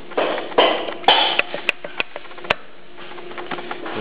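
Loose connecting rod on the crankshaft of a torn-down Isuzu 2.3 L engine, rocked by hand and clacking metal on metal, with several sharp knocks and scrapes in the first two and a half seconds, then quieter. The rod bearing is gone, worn away, which the mechanic puts down to oil starvation or overheating.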